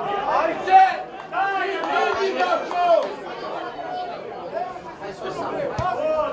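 Several men's voices calling out and talking over one another at a football pitch. A single sharp knock comes near the end.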